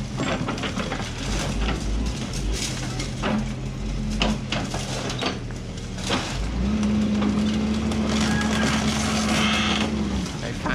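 Doosan DX140 wheeled excavator's hydraulic crusher jaws biting into reinforced-concrete rubble, with repeated sharp cracks and snaps of concrete breaking away from the steel rebar, over the drone of the diesel engine. About two-thirds of the way in, the engine note steps up and holds steady as the jaws work under load.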